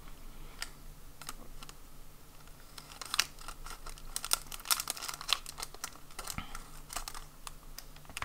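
Scissors cutting across the top of a clear plastic packet: a quick run of small crisp snips and crackles, busiest in the middle.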